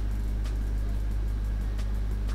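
A steady low hum, with a couple of faint clicks, one about half a second in and one near the end.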